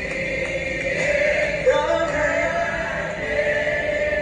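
Gospel singing in church: voices holding long sustained notes, sliding up to a new note a little under two seconds in.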